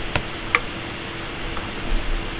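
Computer keyboard and mouse clicks: two sharp clicks about half a second apart, then a couple of fainter ones near the end, over a steady faint hum.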